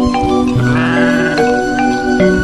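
A sheep bleating once, a wavering call of nearly a second starting about half a second in, over steady background music.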